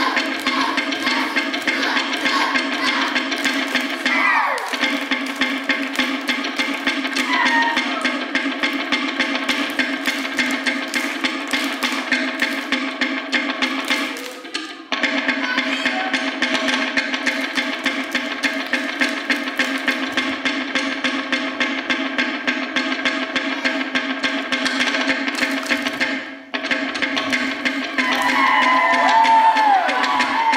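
Samoan drumming: a fast, even run of sharp wooden strikes with drum accompaniment, pausing briefly twice, with voices calling out near the end.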